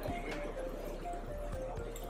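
Background music: a melody of short held notes stepping up and down, over a light clicking beat.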